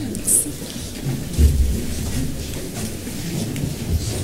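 Shuffling, rustling and low bumps of a group of people moving about and gathering together, with faint murmured voices; a short high rustle just after the start and a dull thump about a second and a half in.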